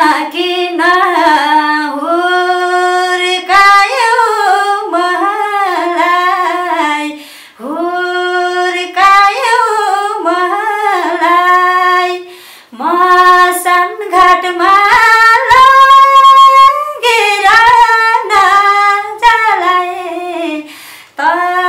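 A woman singing unaccompanied, a single voice with long held notes and sliding pitch, breaking off briefly twice.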